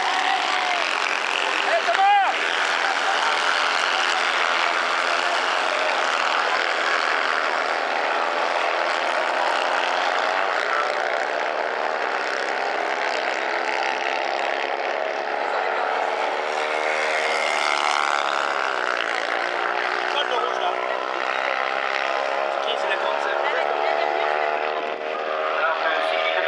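Several dirt-track racing buggies' engines running at high revs together, their pitches overlapping and rising and falling as the cars accelerate and lift through the corners. A brief sharp rev stands out about two seconds in.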